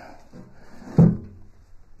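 A split firewood log knocked down onto a woodpile: one solid wooden thud about a second in, with quieter handling noise around it.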